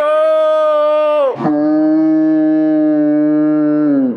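A voice shouting a long, drawn-out "No!" It is held on one high note for just over a second, then drops to a lower note that is held to the end, and each note slides down as it stops.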